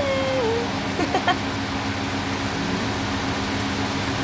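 A person's voice holding a note that dips and stops about half a second in, followed about a second in by a few short squeaky vocal sounds, over a steady low hum and constant outdoor background noise.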